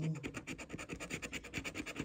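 A coin scraping the coating off a scratch-off lottery ticket in quick, even back-and-forth strokes.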